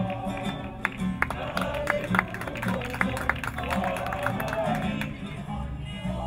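Ukulele and guitar strummed and plucked in a steady rhythm, with women's voices singing along.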